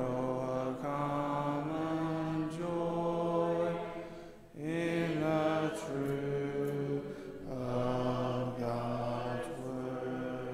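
A congregation singing a hymn a cappella, many voices on long held notes, with a breath pause between phrases about halfway through. The singing eases off near the end as the hymn closes.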